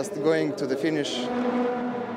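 A man's voice briefly, then the steady drone of Formula 3 single-seater race car engines rolling as a field at low speed.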